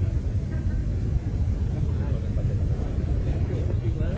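Loud, steady low rumble with indistinct voices over it, on an audience recording of a live concert.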